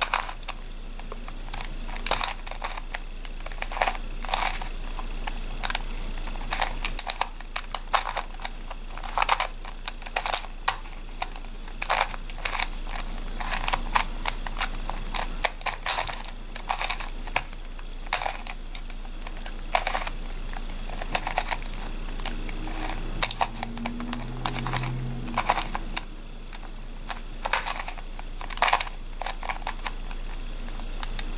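Face-turning octahedron twisty puzzle being turned by hand through a repeated move sequence: a busy run of quick plastic clicks and clacks as its layers turn and snap into place, several a second.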